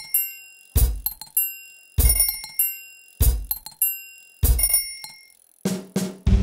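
A bicycle bell ringing in a children's song's instrumental break, five times about every 1.2 seconds. Each ring lands with a low thump, then fades.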